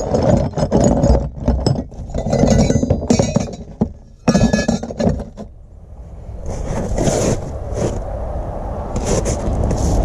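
Brass valves and fittings and copper pipe clinking and knocking against each other as they are handled in a plastic tote. The rapid clusters of clinks come over the first five seconds or so, then it goes quieter, with a few softer rustles near the end.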